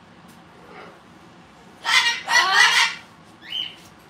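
A pet parrot gives a loud call about two seconds in, lasting about a second, then a short high whistle near the end.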